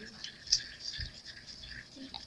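Stir stick scraping and ticking against the inside of a small mixing cup while resin is being mixed, with one sharper tick about half a second in.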